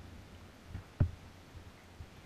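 Quiet paddling in a plastic canoe, with a single sharp, hollow knock on the hull about a second in.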